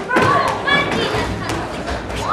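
A rubber Headis ball in play: a few dull thuds as it bounces on the table and is struck with the head, over the voices of players and onlookers.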